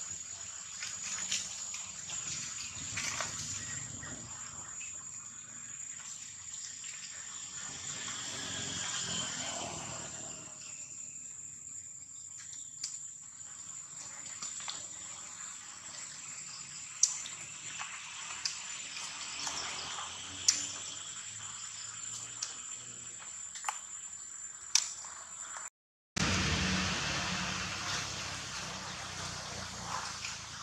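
Steady outdoor background hiss with a thin, high, unbroken whine, scattered sharp clicks, and faint gliding calls near the middle; the sound drops out briefly near the end and comes back as a louder, different hiss.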